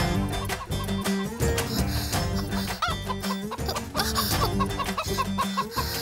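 A chicken clucking over lively background music.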